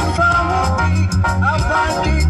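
Live band playing gospel reggae: a steady bass line and drums under a gliding melodic line.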